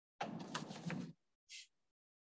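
Rustling, scraping handling noise lasting about a second, followed by a short high hiss.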